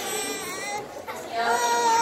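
Voices in a large hall, including a high voice holding long, drawn-out notes in the first half and again near the end.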